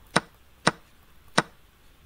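Three sharp wooden clacks of an online chess board's piece-move sound as moves are played through on the analysis board, the first two about half a second apart and the third about three quarters of a second later.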